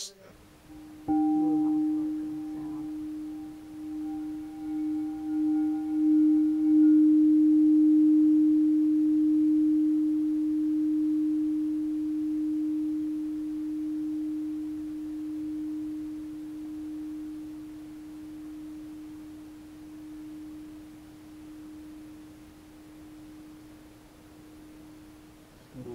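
Frosted quartz crystal singing bowl sounding one low, pure tone that starts suddenly about a second in. The tone swells and pulses for several seconds, with faint higher overtones dying away. It then rings on in a long, slow fade.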